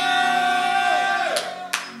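A sustained keyboard chord, held and fading, with a few notes sliding down in pitch about a second in; two sharp hits near the end.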